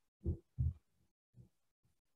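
Two soft, low thumps about a third of a second apart, then a fainter one about a second later.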